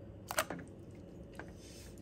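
A single brief splash, about a third of a second in, as a homemade swimbait is dropped into a bucket of water, with a faint tick later and otherwise faint room tone.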